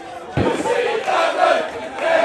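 Cricket crowd in the stand chanting and shouting together, many voices at once, loud from about half a second in after a low thump.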